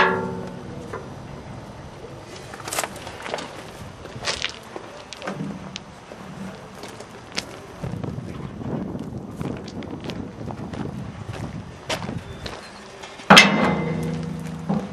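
Scattered knocks and clanks of steel as the waste recycler's discharge chute and its lock are handled by hand, with footsteps on gravel and a louder burst near the end.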